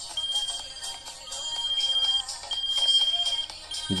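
Airpage pager (Design by Philips) sounding its alert: a high-pitched beep in long stretches with short breaks, a sign that the pager has powered up on its fresh battery and works.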